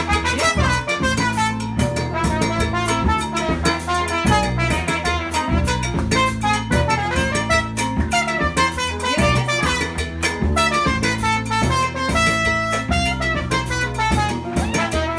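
Live Latin-jazz band playing a salsa groove: drum kit and hand percussion keep a dense, steady rhythm under a brass lead line.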